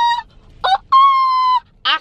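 A woman's loud, high calling cry with her hands cupped around her mouth: a held "oh" that stops just after the start, a short rising syllable, then a second long held "oh". It is her family's call announcing she is home and summoning the kids.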